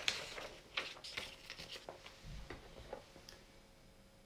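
Faint handling noise: a paper sentence card rustling and small objects being picked up, heard as scattered light clicks and taps that thin out after the first second, with a brief low bump a little after two seconds.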